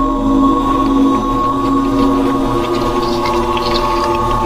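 Ambient background music: a steady drone of several held tones with no beat.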